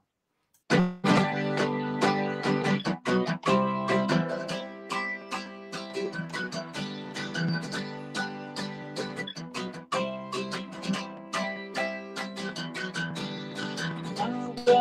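Acoustic guitar strummed in a steady rhythm, starting about a second in after a brief silence: the instrumental intro of a song, with no singing yet.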